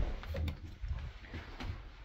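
Low thumps of footsteps and handling noise as someone moves through a small boat cabin, the loudest thump right at the start and softer ones after.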